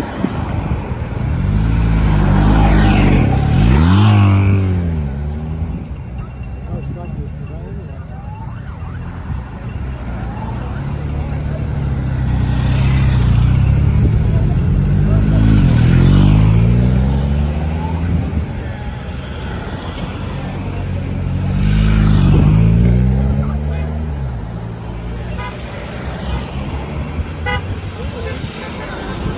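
Race-convoy vehicles, a team car, ambulances and vans, drive past close by on a wet road: three loud pass-bys, each engine note dropping in pitch as it goes by, with tyre hiss off the wet tarmac.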